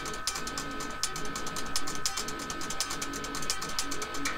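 Eight-string electric guitar played with slap technique: a fast run of percussive slaps and pops on the strings, many sharp clicks a second. A steady tone sits underneath, from a low-quality webcam microphone.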